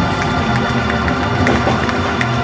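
Live band music with a Hammond organ sustaining chords, loud and steady, with some crowd cheering underneath.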